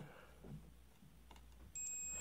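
Harbor Freight multimeter's continuity beeper sounding a steady high-pitched tone near the end, as the two test probes are touched together to close the circuit.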